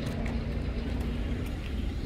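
A motor vehicle's engine running steadily: a low hum over a rumble.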